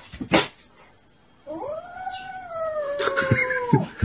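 A short sharp noise, then a kitten's long drawn-out meow of about two seconds, rising slightly, slowly falling and cutting off, with a few clicks near its end.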